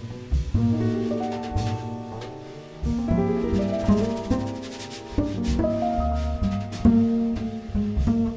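A jazz piano trio playing a ballad: grand piano chords over plucked double bass, with hits on the drum kit.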